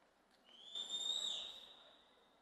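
A single whistle from a person, rising in pitch about half a second in, held for about a second, then falling away.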